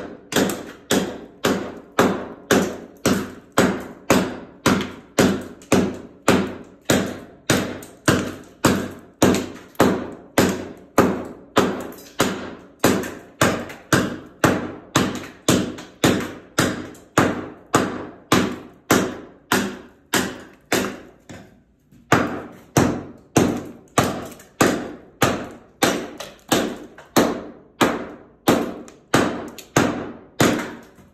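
A hatchet blade striking old VCT floor tiles, knocking them loose from the tile floor underneath: a steady run of sharp blows, about two a second, with one short pause about two-thirds of the way through.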